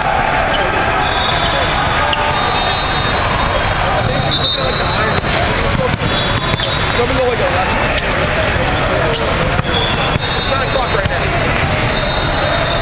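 Loud din of a volleyball tournament hall: many people talking at once, with frequent ball hits and bounces from the surrounding courts. Several short, high referee whistles sound through it.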